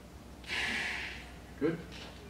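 A hard, fast, full inhalation through the mouthpiece of a K5 inspiratory muscle trainer: a loud rush of air of under a second, starting about half a second in. It is a maximal-effort breath for a test of diaphragm strength.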